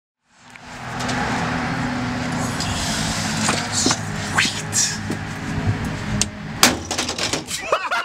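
Outdoor street sound with an engine running steadily underneath. A scattering of sharp clicks and knocks starts midway and comes thick and fast in the last second or two, and laughter starts right at the end.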